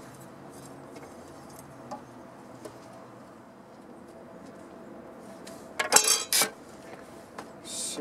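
Hand tools handled on a stack of 2x4 boards: faint scrapes and ticks, then a quick, loud cluster of metallic clinks and knocks about six seconds in.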